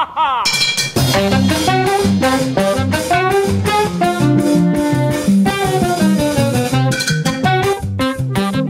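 A small swing band playing a tune live, with drum kit, guitar and saxophone. The full band comes in together within the first second, after a short run of sliding notes, and then plays on with a steady drum beat.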